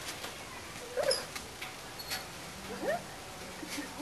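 Dog giving short, rising whines, one about a second in and another near three seconds.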